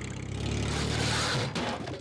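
Engine sound effect of a cartoon tracked vehicle: a steady low engine rumble that swells about half a second in and drops away about a second and a half in.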